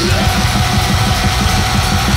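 A thrash/groove metal band playing live: distorted electric guitar, bass and drums, with rapid drumming driving a continuous loud wall of sound.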